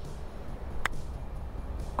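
A single sharp click about a second in: a full-toe wedge striking a golf ball on a short chip. The ball is struck toward the toe, where this club's sweet spot probably lies, and the contact sounds a bit better in vibration.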